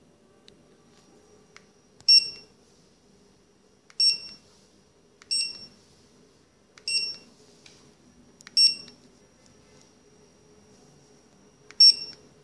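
Handheld Generalscan M500BT-DPM Bluetooth barcode scanner beeping as it reads Data Matrix codes: six short, high beeps, one every second and a half to two seconds, each beep the scanner's good-read signal.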